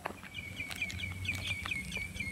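A bird chirping in a quick, even series of short high notes, about seven or eight a second, starting a moment in and running almost to the end.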